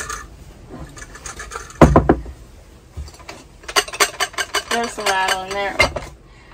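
Stainless steel bowls and glassware stacked in a plastic dish crate being handled and shaken to test for rattling: one heavy knock about two seconds in, then a quick run of small clinks near the end. The dishes are separated by non-slip drawer liner, and only a few small items still rattle.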